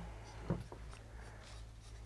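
Faint scraping and smearing of a palette knife working thick acrylic paint mixed with gesso on palette paper, with one brief soft knock about half a second in.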